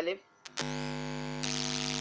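A click, then a loud, steady electronic buzz with a strong hum that comes on just after half a second in. It turns harsher and hissier about a second and a half in and holds steady under the speech.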